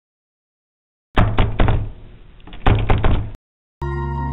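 Knocking on a wooden door: two rounds of several quick knocks about a second and a half apart, cut off abruptly. Soft sustained music with bell-like tones begins just before the end.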